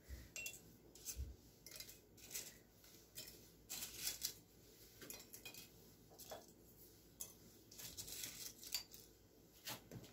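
Dried bay leaves rustling and tapping as they are picked from a plate and dropped one by one into empty glass jars, heard as faint, scattered light clicks.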